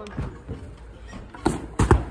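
Parallel bars knocking as a gymnast lowers from a handstand into front support on the rails: three sharp knocks in quick succession about a second and a half in.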